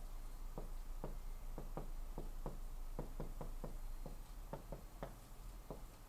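Marker pen writing on a whiteboard: an uneven run of light, sharp taps, about three a second, as the tip strikes the board with each stroke.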